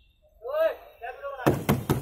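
A quick run of about five hard knocks on the rear door of an ambulance, in the last half second, after a man calls out twice.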